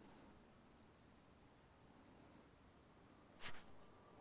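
Faint, high-pitched insect trill pulsing rapidly and steadily, with one sharp click about three and a half seconds in.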